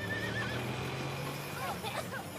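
A whinny at the start, over a steady rumble of hoofbeats and wagon wheels as a stagecoach races past, raising dust. Short cries follow near the end.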